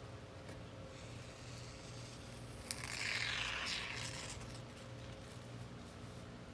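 A click, then a hiss of polyurethane injection foam sprayed from an aerosol can, lasting just over a second, about halfway in.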